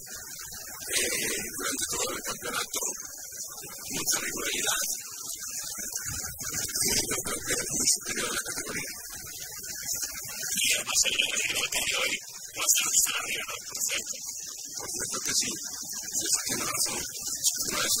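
Indistinct speech, hard to make out, over a steady hiss.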